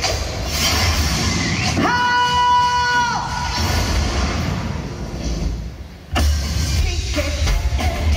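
Live band music played loud through a concert PA, with heavy bass. About two seconds in a high held note sounds for about a second; near six seconds the music drops away briefly, then comes back in sharply at full level.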